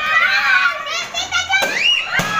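Children shouting and squealing with laughter in high, excited voices. A single short, sharp crack about a second and a half in.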